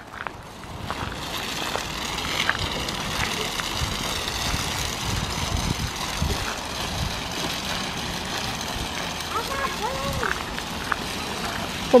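Steady rolling noise of a baby stroller's and a toy pram's wheels on rough asphalt, with walking footsteps, and a faint voice briefly near the end.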